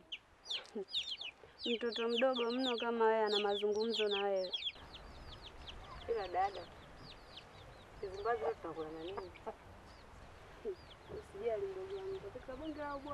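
Chicks peeping in a steady stream of short, high, falling chirps, with a hen clucking now and then. A woman's voice speaks for a couple of seconds in the first half.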